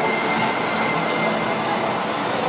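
Steady background noise of a busy exhibition hall, an even wash of sound with no distinct events, and a faint high tone held through most of it.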